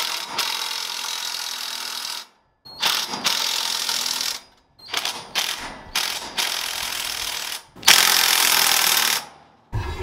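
Cordless 20V impact driver hammering in four runs of a couple of seconds each, with short pauses between; the last run is the loudest.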